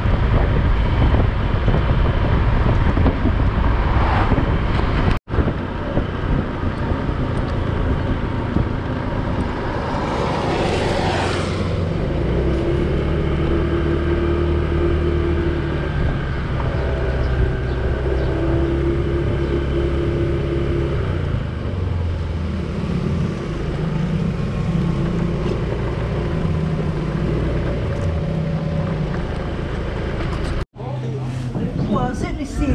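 Motorcycle engine running with wind and road noise while riding on a wet road, with a brief dropout about five seconds in. From about twelve seconds in, the engine note turns steadier and lower as the bike slows to a crawl.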